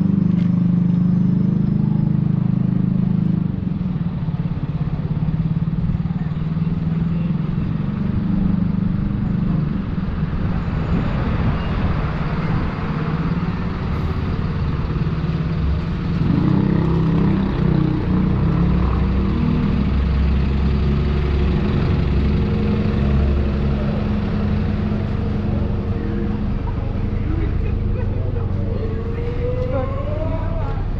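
Town-centre road traffic with a double-decker bus engine running close by: a steady low engine hum throughout, heaviest in the second half, and a vehicle passing about eleven seconds in.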